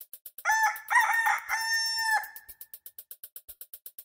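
A rooster crowing once, cock-a-doodle-doo, the last note held longest, over a fast, even ticking of about eight a second with a soft thump about once a second.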